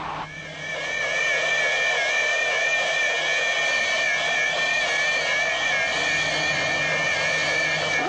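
Electronic sci-fi sound effect for the tentacled space monster: a shrill, warbling whine of several high tones that swells up within the first second and then holds steady.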